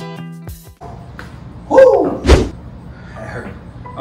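Background music cuts off about a second in. A man's loud exhaled grunt follows, then a heavy thud on the floor, the loudest sound, as he ends a set of reverse crunches on a floor mat.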